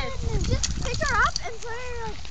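Dogs playing together give a few short, pitched yips and whines that slide sharply in pitch, mixed with people's voices.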